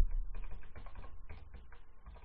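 Typing on a computer keyboard: a quick, uneven run of key clicks, about five or six a second. It opens with a low thump, the loudest sound here.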